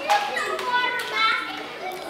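Several young voices talking and exclaiming over one another, with no clear words.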